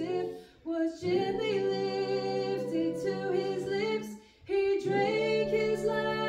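Men and women singing a hymn together a cappella, in harmony. Two short breaks for breath come, one about half a second in and another a little after four seconds.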